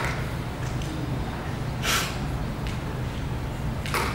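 Short, sharp breath noise into a close microphone about two seconds in, with a smaller one near the end, over a steady low hum.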